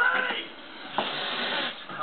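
A cat hissing once about a second in: a short, noisy hiss lasting under a second, during a rough play fight between two cats.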